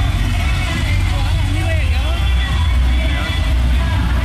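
Street noise of a procession: a steady low rumble of slow-moving trucks, with people's voices calling out over it.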